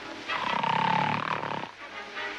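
A loud snore from a sleeping man: a rasping rumble with a whistling tone riding over it, lasting about a second and a half.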